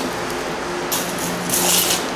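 Steady background hum with a few constant low tones, broken by short hissing rustles about a second in and again near the end.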